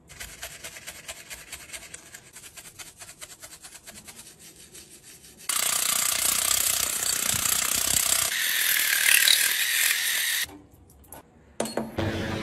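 Brush bristles scrubbing a white plastic makeup compact in quick, scratchy strokes for about five seconds. Then comes a loud, steady rush of running water rinsing it, which stops about ten seconds in.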